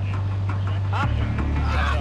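A steady low drone that drops in pitch abruptly about a second in, under a man calling 'up'.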